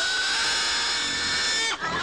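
A herd of pigs squealing as it runs: one long, high squeal that cuts off sharply near the end, with lower wavering cries following.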